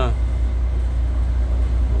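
Steady low rumble of a truck's diesel engine idling.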